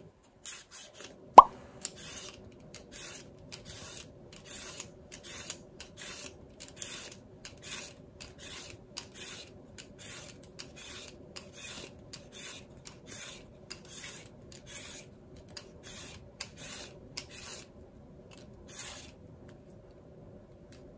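Y-shaped vegetable peeler scraping strips of peel off a raw carrot in repeated short strokes, a bit more than one a second. A single sharp knock about a second and a half in is the loudest sound.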